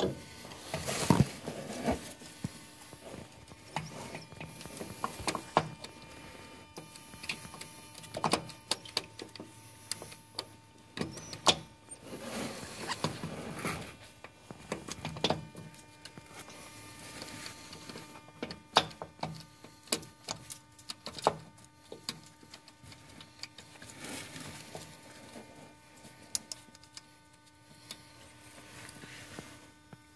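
Handling noise of a VGT turbo actuator being worked by hand onto the turbocharger: irregular clicks, knocks and rubbing scrapes as its housing and gear are wiggled into place, over a faint steady hum.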